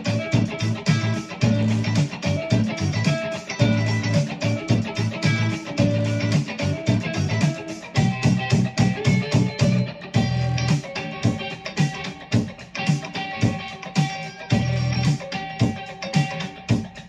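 Fender Stratocaster electric guitar playing a lead line over a backing track with a steady beat and low bass notes.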